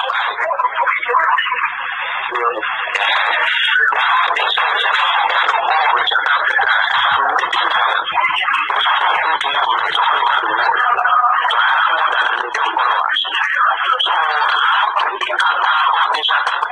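Speech from an unclear recording of a phone conversation played back, the voices thin and telephone-like and hard to make out.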